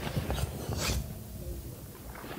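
A few light clicks and rustles from small objects being handled, mostly in the first second, over a steady low background rumble.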